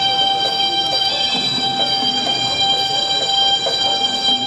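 Traditional Thai ringside music: a reed pipe holds one long, steady note while shorter, lower notes come and go beneath it.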